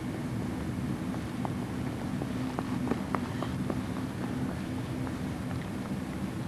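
Steady low hum with a few faint, short light clicks and taps scattered through the middle.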